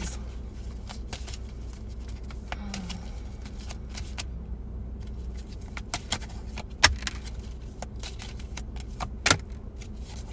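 Oracle cards being shuffled and drawn by hand: scattered light clicks and snaps of card stock, with two sharper snaps near the end. Under it, a steady low hum of a car's cabin.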